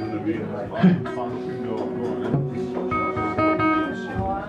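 Acoustic guitar being picked and strummed, notes ringing out, with a few clear ringing notes near the end, over the voices of a pub crowd.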